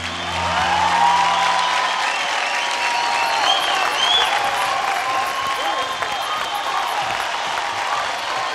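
Studio audience applauding, with voices calling out over the clapping. The last low note of the song's backing music fades out about two seconds in.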